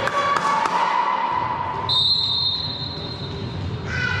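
A couple of sharp ball smacks and high voices calling, then a referee's whistle blown as one steady high note held for about two seconds.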